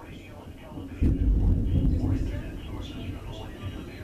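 Thunder about a second in: a sudden loud low rumble that fades away over the next two seconds.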